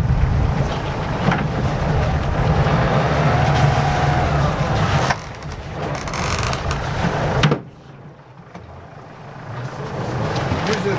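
Sailboat's inboard diesel engine running under way, with wind noise on the microphone. About five seconds in the sound changes, and two and a half seconds later it drops suddenly to something much quieter.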